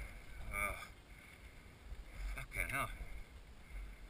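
Two short bursts of a faint, indistinct voice, about half a second in and again near three seconds, over a steady low rumble.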